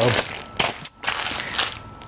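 Plastic zip-top bag crinkling and rustling as it is zipped shut and pressed flat, with a few sharp clicks.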